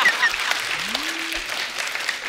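Studio audience applauding, with a man's laughter trailing off at the start; the clapping slowly thins out toward the end.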